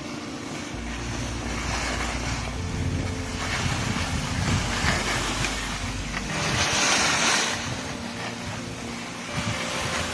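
Skis sliding and scraping over packed snow on a downhill run, a steady hiss that swells and fades, loudest about seven seconds in, with wind buffeting the phone's microphone as a low rumble.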